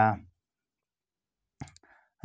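The tail of a spoken word, then silence, then a few brief soft clicks near the end, just before speech resumes.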